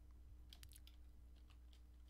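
Faint clicks of computer keys as a block of code is pasted into a terminal: a quick cluster about half a second in and two single clicks near the end, over a low steady hum.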